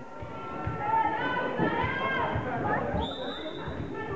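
Gym crowd chatter, many voices overlapping. About three seconds in, a referee's whistle sounds one steady note for about a second, signalling the server to serve.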